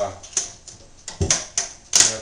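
A string of small clicks and knocks as the hinged glass front of a wooden shadow box is worked at its top edge, with a dull knock just past the middle and a sharp click near the end.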